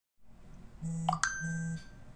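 Two short, buzzy electronic beeps, each well under half a second, with a quick rising chirp and a click between them.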